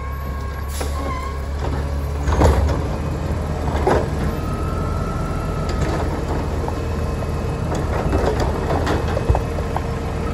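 Mack LEU garbage truck's diesel engine running steadily while its Labrie Automizer automated arm grabs a wheeled cart, lifts and empties it into the hopper, and sets it back down. There is a brief hydraulic whine midway and several knocks as the cart is handled, the loudest about two and a half seconds in.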